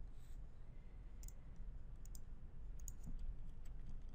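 Computer mouse button clicks: a few sharp ticks in small groups, about a second apart, over a faint low hum.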